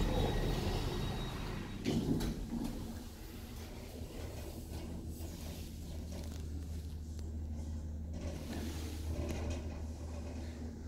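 Two-speed sliding doors of a 2000 Ace passenger lift closing, meeting with a knock about two seconds in. The car then sets off downward with a steady low hum.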